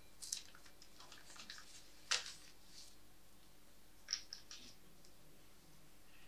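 Quiet room with scattered faint clicks and rustles of small handling noises: one sharper click about two seconds in and a short cluster of clicks around four seconds in.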